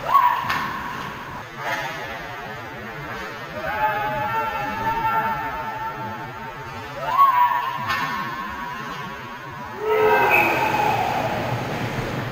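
Long, drawn-out shouts from hockey players echo around an ice rink, each rising into a held note. A louder shout comes near the end as a goal is scored.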